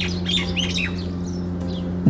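Background music holds a low steady chord. A handful of short, high, bird-like chirps sound in about the first second.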